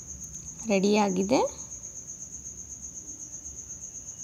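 Insect trilling steadily at a high pitch, in a rapid, even pulse.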